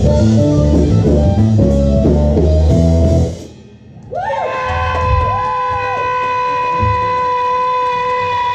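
Live blues-rock band with electric guitar, bass, drums and saxophone playing a passage that stops about three seconds in; after a short pause a final long note is held steady with a wavering line over it, lasting to the end of the song.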